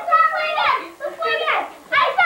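Several children's high-pitched voices calling out in quick, excited bursts during a noisy group game.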